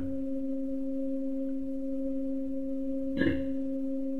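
A steady, even electronic tone, a hum with a fainter tone an octave above it, held without change. A brief soft rustle-like noise comes about three seconds in.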